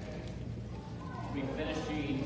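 A man speaking: a sermon voice talking over a steady low hum, with a brief gap early on.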